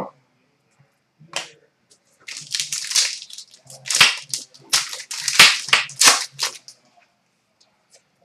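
A trading-card pack's wrapper being torn open and crumpled: a single click, then several seconds of sharp crinkling crackles.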